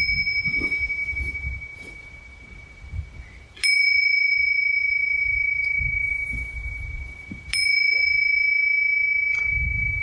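A small meditation bell struck three times, at the start, about three and a half seconds in and about seven and a half seconds in; each strike rings on with a clear, steady high tone that slowly fades. These are closing bells at the end of the session.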